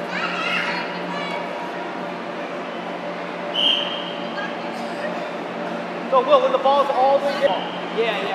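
Children's voices and shouts in an indoor soccer hall over a steady low hum, with one short high whistle about three and a half seconds in. Voices call out louder near the end.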